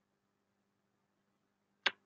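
Very quiet room tone with a faint steady low hum, then a single sharp click near the end.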